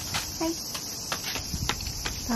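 Steady high-pitched chorus of singing cicadas, with a few light clicks over it.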